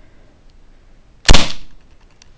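A Black Ops BB revolver dry-fired once with no BB loaded, a little over a second in. It gives a single pretty loud, deep shot that dies away within half a second.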